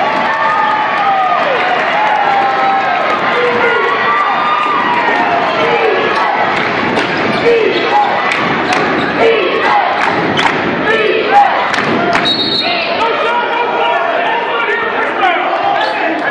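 Indoor college basketball game: a crowd calling and cheering over players' shouts, with a basketball bouncing on the hardwood court in a run of sharp knocks from about six to twelve seconds in. A brief high tone sounds about twelve seconds in.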